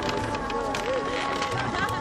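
Drama soundtrack: held tones of background music run steadily under the murmur of distant voices and room ambience, with no clear speech in front.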